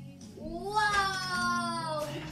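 A long, drawn-out, high-pitched vocal cry from a person, like a delighted "ooh" or "aww". It starts about half a second in, rises in pitch, then glides slowly down over about a second and a half.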